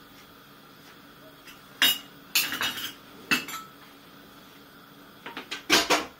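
Metal pots, pans and cutlery being handled in a kitchen sink: bursts of sharp clinks and clanks about two seconds in, again around three seconds, and loudest near the end.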